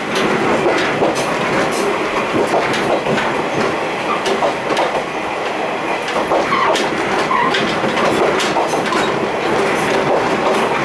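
Steel gangway plates between two coupled KiHa 28 and KiHa 52 diesel railcars clanking and rattling as the train runs, with frequent irregular sharp knocks over a steady roar of wheels on rails.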